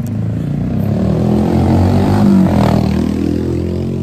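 A motor vehicle passing close by on the street, its engine and road noise swelling to a peak about halfway through and then fading.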